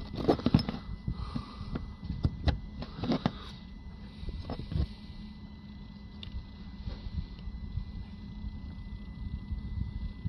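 Light clicks and scrapes from a plastic boost (MAP) sensor being handled and its carbon-clogged tip picked at with a fingernail, mostly in the first few seconds, over a steady low hum.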